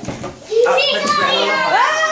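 Excited high-pitched voices, a child's among them, with long rising and falling exclamations.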